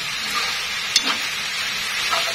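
Beef, onion and instant noodles sizzling as they are stir-fried over high heat in a stainless steel pan, with a single sharp click of the chopsticks against the pan about a second in.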